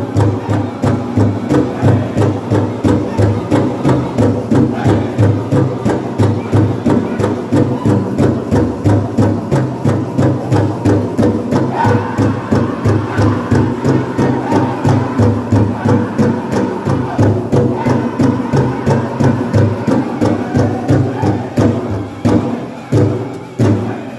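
Powwow drum group playing a jingle dress song: a big drum struck in a steady beat of about two strikes a second, with the singers chanting over it.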